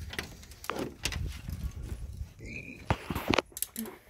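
Rustling and handling noise with several sharp clicks and knocks, and a brief high squeak about two and a half seconds in.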